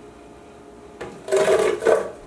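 Frozen mango chunks tipped from a plastic measuring cup into a Vitamix blender jar holding almond milk, tumbling and clattering in a loud rush that starts about a second in.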